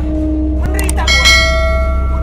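A single bell strike about a second in, ringing on for over a second with many overtones, over a steady low drone.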